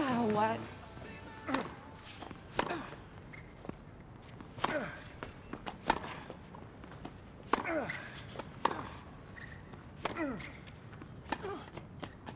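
Tennis practice on a hard court: sharp racket-on-ball hits and bounces, in pairs about a second apart, each hit followed by a short grunt from the player that falls in pitch.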